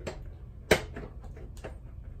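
A sharp click about three-quarters of a second in, with a fainter click before it and a few light ticks after, as a tall motorcycle windscreen is handled and bent onto its mounts.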